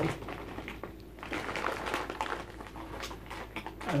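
A bag of hard boiled sweets crinkling and rustling as it is handled, with small clicks of the sweets knocking together inside. It starts about a second in.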